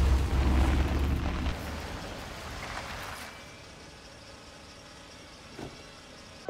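Deep rumble of a car driving, loud for the first second and a half and then fading to a quieter steady hiss, with a faint click near the end.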